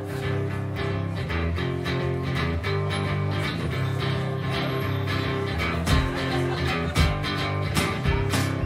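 Solo acoustic guitar playing a song's instrumental intro: a steady strummed rhythm over a repeating bass line, with two heavier low accents near the end.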